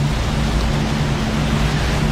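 Film-trailer soundtrack: a steady rushing noise over low sustained music notes, with no dialogue.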